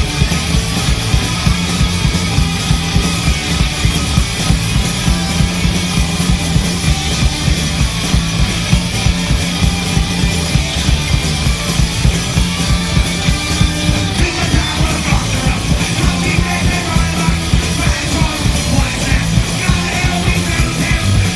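Punk rock band playing live: electric guitars, bass and drums at full volume, driven by a fast, steady drum beat.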